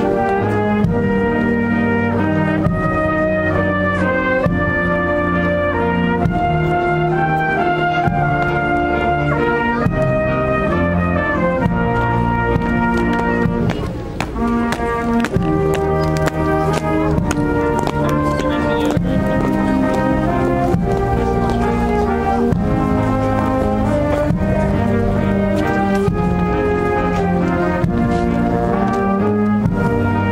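Brass band playing music in held chords that change every second or so, with a brief dip about halfway through.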